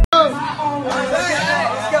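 Several young male voices talking over one another in a hubbub of chatter.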